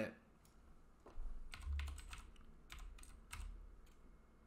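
Faint, irregular clicking of computer keys, starting about a second in, with a soft low thud under some of the clicks.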